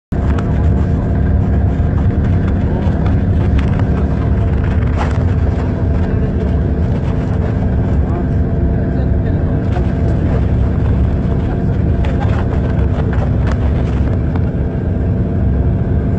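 A vehicle driving: its engine runs steadily under a constant low drone of road noise, with a few faint knocks.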